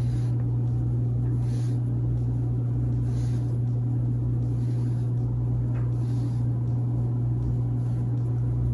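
A steady low hum with faint soft rustles of wool yarn being drawn through crocheted fabric by hand.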